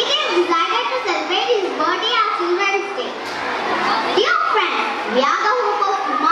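A young girl speaking into a handheld microphone, talking without pause in words the recogniser did not catch.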